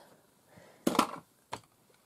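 Two sharp, quick knocks about a second in, then a faint click: small hard objects being handled on the craft table.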